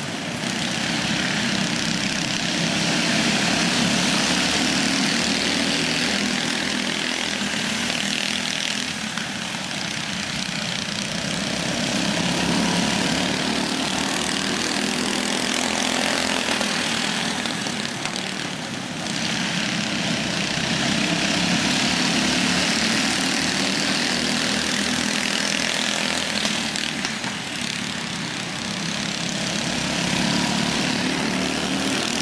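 Several small go-kart engines racing on a dirt track, their combined drone swelling and fading as the pack laps past about every nine seconds.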